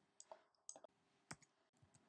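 Near silence broken by about five faint, short clicks of a computer mouse, the loudest just past a second in.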